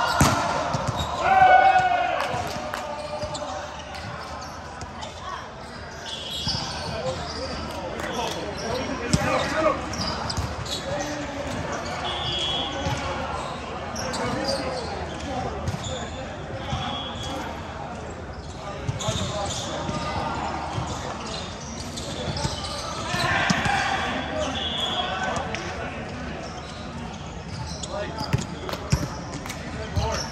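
Indoor volleyball play: repeated sharp thuds of the ball being hit and bouncing on the court, with players' voices calling out. The hall is reverberant.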